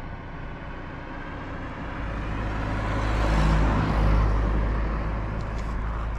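A motor vehicle running close by. Its noise swells to a peak about midway and then eases a little, over a steady low engine rumble that sets in about two seconds in.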